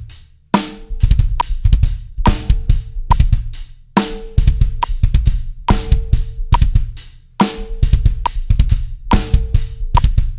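Drum kit playing a broken double bass drum groove: fast, shifting kick-drum patterns from both feet that switch between note values, under snare and cymbals. The phrases each open with a loud cymbal hit about every 3.5 seconds, over a steady high click about every 0.8 seconds.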